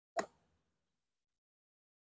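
A single sharp click about a fifth of a second in, typical of a golf club striking a ball on a driving range.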